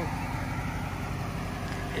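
Dodge Challenger R/T Shaker's V8 idling with a steady low rumble.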